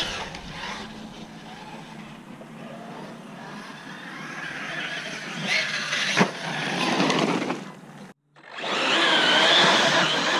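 Arrma Talion 6S electric RC truggy driving over muddy grass, its brushless motor whining as the throttle rises and falls. The sound grows louder toward the middle, cuts out abruptly for a split second about eight seconds in, then comes back loud with rising and falling whine.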